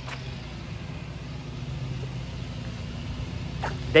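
Road traffic passing: a vehicle's steady low engine hum with tyre noise, growing a little louder over the first few seconds.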